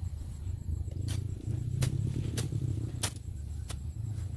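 A hand blade slashing through short grass in regular strokes, about three every two seconds, each a short sharp swish, over a steady low rumble.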